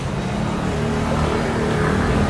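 Street traffic: a motor vehicle's engine hum, its pitch edging upward slightly, over the general noise of the city street.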